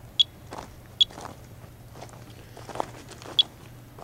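Handheld Monitor 4 Geiger counter clicking out single counts: three sharp, high-pitched chirps spaced irregularly, a low count rate with the needle near zero, typical of background radiation. Footsteps crunch on wood-chip mulch between the clicks.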